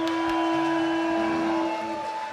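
A live band's final note held after the last hit of the song: one steady electric-guitar tone ringing on, with a few light cymbal ticks near the start. The tone stops just before the end.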